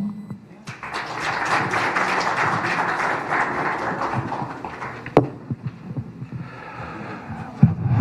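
Audience applauding in a hall for a few seconds, thinning out about halfway through. A single sharp knock follows, like a microphone or podium being touched.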